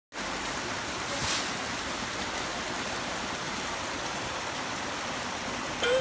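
Small garden waterfall splashing steadily down a rocky cascade.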